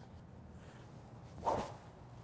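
One short whoosh of a SuperSpeed Golf light training stick swung hard left-handed through the air, about one and a half seconds in.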